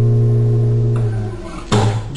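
Classical acoustic guitar playing a bossa nova arrangement: a chord left ringing and slowly fading, then a fresh strum near the end.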